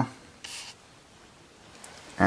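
A brief rubbing scrape about half a second in, then faint room tone.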